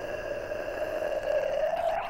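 A patient holding one steady pitched note with liquid lidocaine dripped onto the larynx through a curved cannula, the anaesthetic coating the larynx and giving the voice a laryngeal gargle. The note stops near the end.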